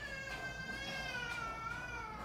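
A long, unhappy wailing cry: one drawn-out call that falls slightly in pitch over about three seconds.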